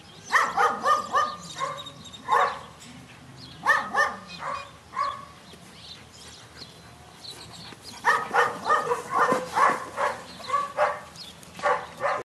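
Dog barking in three bouts of quick, loud barks, with short pauses between the bouts.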